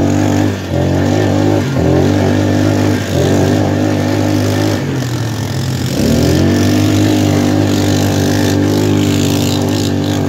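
Polaris Magnum ATV engine running under throttle while riding. The revs dip briefly a few times, sink around five seconds in, then climb again and hold steady.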